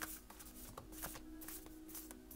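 A tarot deck shuffled by hand: a fast, irregular run of soft card flicks and slaps as the cards slide against one another.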